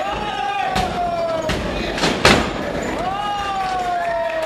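A few sharp impacts in the wrestling ring, the loudest about two seconds in, over long drawn-out shouts from the spectators.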